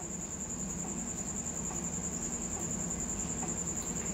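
A continuous high-pitched, insect-like trill over a low steady hum, with faint scratching of a pen writing on paper.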